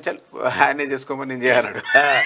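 A man's voice talking animatedly, in short bursts with a high, rising stretch near the end.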